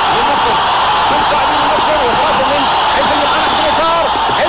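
TV match commentator speaking quickly over the steady noise of a stadium crowd as a counter-attack builds.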